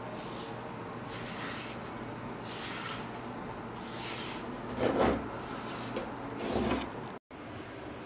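A metal spatula scraping and stirring crumbly besan halwa in a nonstick wok as the sugar is mixed in. It is a run of scrapes with two louder ones past the middle, over a steady low hum.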